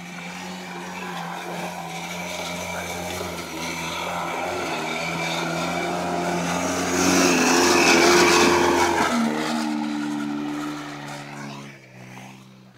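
Polaris Sportsman ATV engine pulling up a snowy hill under steady throttle. It grows louder as the quad approaches, passes close about eight seconds in, then drops in pitch and fades as it moves away.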